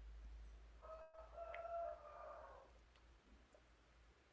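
Rooster crowing faintly: one crow starting about a second in and lasting under two seconds, over a low steady hum.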